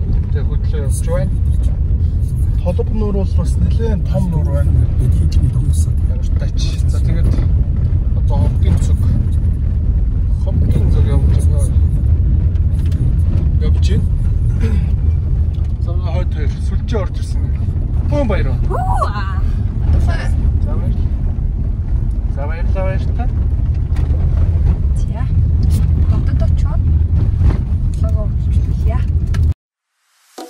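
Steady low road and engine rumble inside a moving car's cabin, with voices talking over it at times. It cuts off suddenly just before the end.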